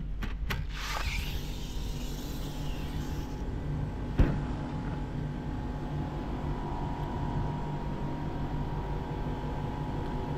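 Steady low rumble of city traffic and building machinery. Early on there are a few clicks and a hissing rustle as sheer curtains brush over the microphone, then one sharp knock about four seconds in.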